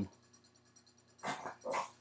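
A small dog barking twice in quick succession, short sharp barks near the end: a pet demanding her missing toy.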